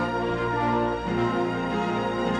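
Symphony orchestra playing held chords, with a trumpet playing among them; the harmony changes about a second in.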